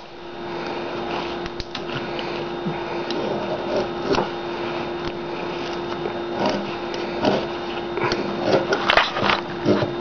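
A serrated knife blade scraping and clicking against the edge of a UV-cured glaze coat on a ceramic tile, in short irregular strokes that come more often near the end. The blade cannot get under the hard-bonded coating. A steady hum runs underneath.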